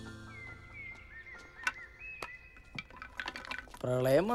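Soft string music fading out, then faint outdoor ambience: short chirping bird calls and scattered light clicks.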